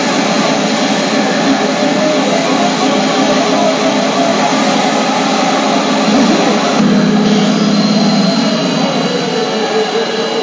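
CR Garo FINAL ZZ pachinko machine playing its effect music and sound effects over the steady roar of a pachinko parlour. About seven seconds in, the machine's sound changes with a new low steady tone.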